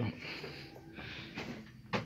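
Quiet indoor shop background noise, with one short, sharp sound near the end.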